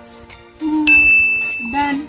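A bright edited-in 'ding' sound effect, one high chime that comes in suddenly near the middle and is held for about a second over soft background guitar music. It is the kind of 'correct' chime that goes with the green tick marking a pose as done right.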